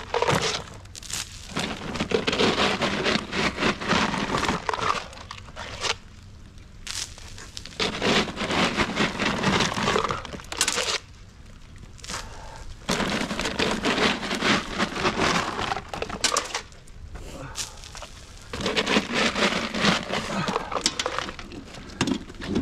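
Salt pellets being scooped by cup from plastic bags and scattered onto a wet concrete walk: crinkling bag plastic and rattling, pattering pellets. The sound comes in several bouts of a few seconds each, with short pauses between.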